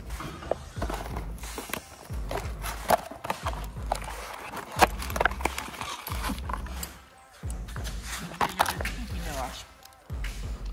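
Handling noise: a plastic bag crinkling and a rubber-and-metal steering-column flexible coupling being turned over in the hand, with irregular clicks and rustles.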